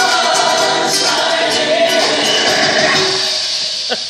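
Choral vocal music playing loudly through a boat's wakeboard-tower marine speakers, fading down near the end.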